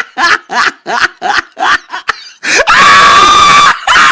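A person laughing in quick repeated bursts, about four a second, then breaking into one loud, long, high-pitched scream of a little over a second near the end.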